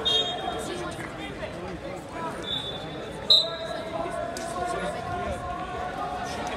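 Voices echoing around a gym crowded with spectators, with brief high squeaks from wrestling shoes on the mat. One squeak lasts under a second, starting about two and a half seconds in and ending in a short, sharp, loud sound.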